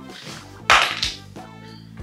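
Background music with steady notes, broken about two-thirds of a second in by a sudden loud noise, followed by a smaller one just after.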